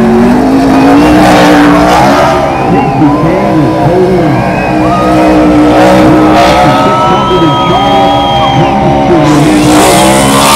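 NASCAR Cup stock car's V8 engine revving hard up and down again and again in a burnout, its rear tyres spinning and squealing on the asphalt. Loud throughout.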